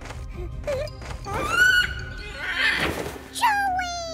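Cartoon background music with a character's wordless vocal sounds: a rising call about a second and a half in, a short noisy burst near three seconds, and a falling call near the end.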